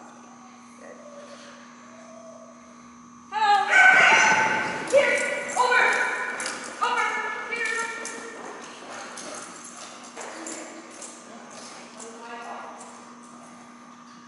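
A woman's high-pitched, excited calls to her dog, starting suddenly about three seconds in and loudest over the next few seconds, with quick footfalls and thumps on a rubber agility mat as handler and dog run the jumps.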